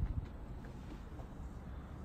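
Faint steady low background rumble of outdoor ambience, with a soft low thump right at the start.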